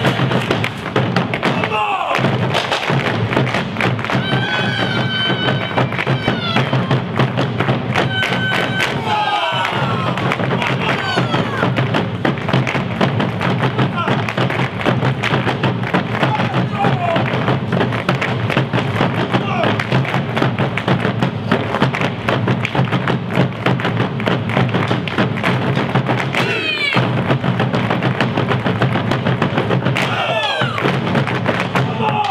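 Argentine malambo-style folk music: dancers' boots stamping fast and rhythmically together with large bombo drums, over guitar.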